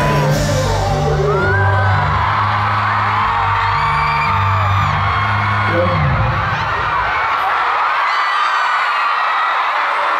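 Live K-pop dance track with a heavy bass line played through arena speakers, cutting off about six seconds in, under a crowd of fans screaming and cheering that keeps going after the music stops.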